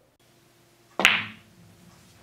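One sharp click of pool balls colliding, about a second in, with a brief ring: the cue ball striking a frozen two-ball combination in a cut shot.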